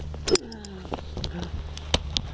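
Handling noise of a camera against a tandem skydiving harness and jumpsuit: fabric rustling and sharp clicks of harness metal hardware, the loudest just before the end, over a steady low rumble. A brief falling voice sound about half a second in.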